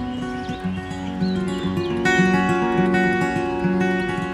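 Acoustic guitar playing an instrumental passage, with notes ringing on one after another. A few faint bird chirps come through in the first half.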